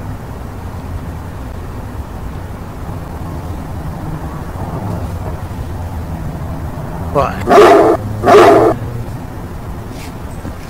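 A dog barks twice, about a second apart, over a steady low hum.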